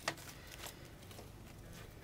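Phillips screwdriver tightening a screw that holds a ceiling fan blade to its metal bracket: a sharp click at the start and a faint tick shortly after, over a quiet steady background.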